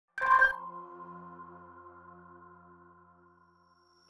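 A single synthesized electronic ping, struck sharply and then ringing on in several steady tones that fade away over about three seconds.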